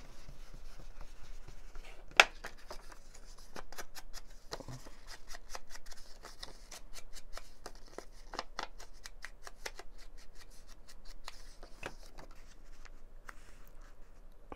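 An ink blending brush is rubbed over a Rolodex card and the card is then handled, making a run of light clicks and paper scrapes. One sharp click comes about two seconds in.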